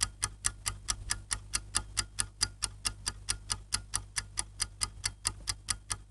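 Clock ticking, a timer sound effect: even ticks about four times a second over a low steady hum, stopping just before the end.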